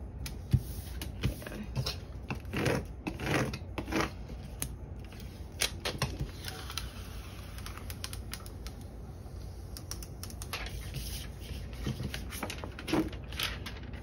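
A clear lettering decal's gridded transfer tape being peeled back and the decal pressed onto a plastic divider: irregular crackling and tapping clicks in several short clusters.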